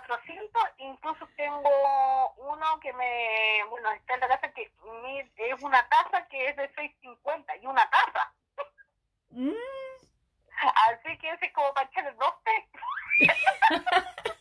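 Women talking and giggling, heard over a phone call.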